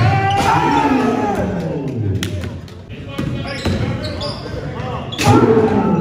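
Basketball game in an echoing gymnasium: people shouting, one long falling call early on, and a louder burst of voices near the end, with a basketball bouncing and sharp knocks on the hardwood court.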